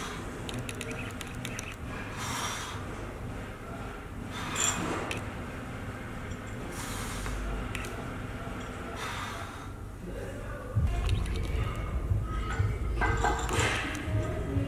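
A man breathing hard through a set of barbell bent-over rows, a heavy breath about every two seconds. About eleven seconds in, music with a loud, pulsing bass beat comes in.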